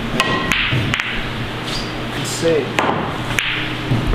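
Pool cue striking the cue ball and billiard balls clacking together and against the cushions: a few sharp clicks in the first second, then more knocks later.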